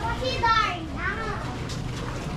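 Children's high-pitched voices calling out, several short rising and falling calls in the first second or so, over a low steady background rumble.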